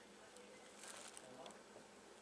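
Near silence: faint room tone with a low hum, hiss and a few faint ticks.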